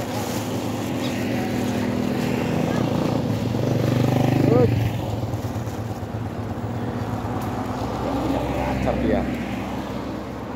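Motorcycles running past on the road, one coming close and loudest about four and a half seconds in before its sound drops away, with more engine sound going on behind it.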